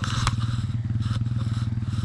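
An engine running steadily in the background, a low, even hum with a fast regular pulse, and a single sharp click just after the start.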